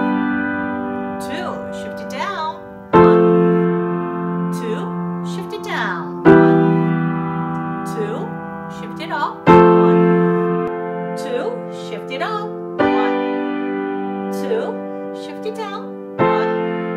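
Piano block chords played with both hands, a new chord about every three seconds, each held by the sustain pedal and ringing as it fades. The sound is briefly cut off just before each new chord as the pedal is lifted and pressed down again: pedal changes made in time with the chords.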